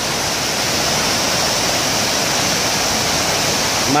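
Steady rushing noise of running water in a flooded concrete storm channel.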